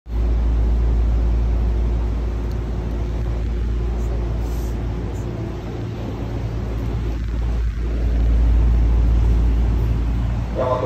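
Steady low rumble of a commuter train car in motion, heard from inside the car, with a faint hum over it; it grows a little louder near the end.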